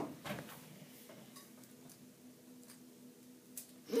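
Faint light clicks of a small plastic spoon working in a plastic Kinder Joy tub, with one sharper click near the end, over a steady low hum.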